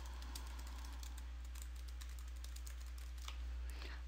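Computer keyboard typing: a quick, irregular run of faint keystroke clicks over a steady low hum.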